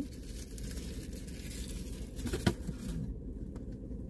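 Steady low hum of a car cabin, with a couple of faint clicks about two and a half seconds in.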